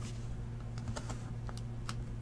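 Scattered light taps and clicks of cardboard trading-card boxes being handled and set against each other, over a steady low electrical hum.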